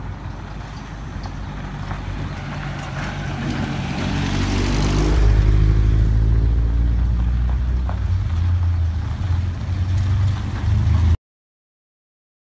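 Pickup truck driving slowly toward the microphone over a rough, potholed street, its engine growing louder as it nears and loudest about five to six seconds in, with tyre noise on the broken surface. The sound cuts off suddenly near the end.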